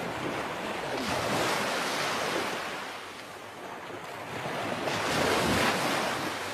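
Ocean surf washing up a shore: two surges, swelling about a second and a half in and again near the end, with a lull between.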